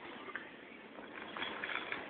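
Faint clicks and light rattling from a toddler's wheeled gait-trainer walker rolling on a hard floor as he steps along in it.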